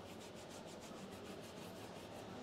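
Faint, quick back-and-forth scrubbing of a soft-bristled detailing brush on a leather car seat wet with cleaner.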